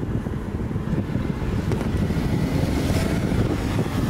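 Car engine running as the car pulls away, under a steady low rumble of wind on the microphone.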